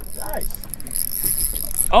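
Spinning reel being cranked against a freshly hooked fish, its gears turning over wind and water noise.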